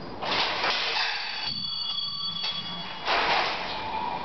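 The robot's electric drive motors, wired straight to a 24 V battery with no controller, run at full power with a high steady whine. The moving metal frame makes loud noisy bursts about a quarter-second in and again just after three seconds.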